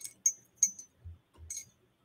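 A few faint, short metallic clinks, about four spread over two seconds, with soft low taps between them, as small hard objects are handled.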